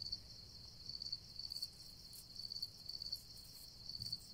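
Faint, steady chirping of crickets, a high pulsing trill.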